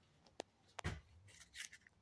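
Faint small clicks and rustling, with a soft thump a little under a second in.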